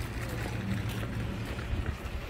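Wind buffeting the microphone as a steady low rumble, over general outdoor ambience.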